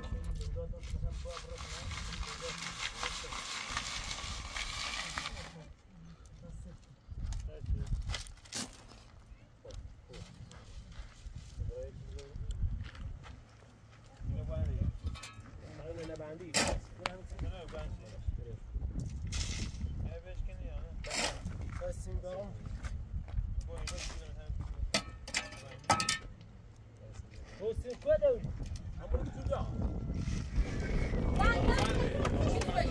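Manual earthwork in dry, stony soil. For the first few seconds soil is shaken through a hand sieve with a steady rattling hiss. After that a shovel scrapes and bites into the dirt, with scattered sharp knocks.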